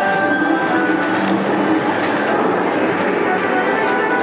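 Dark-ride soundtrack music with a dense rattling, rumbling noise mixed over it.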